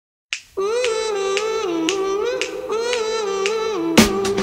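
A cappella song intro: finger snaps about twice a second under a held, wordless vocal melody that steps between a few notes. It starts about half a second in.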